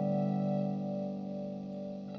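Electric guitar chord from a Telecaster, played through a Chicago Iron Tycobrahe Pedalflanger into a Fender Princeton amp, ringing on and slowly fading with the pedal's gentle sweeping modulation.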